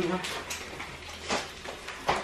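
Two light knocks about a second apart in a small kitchen, over a low steady hum.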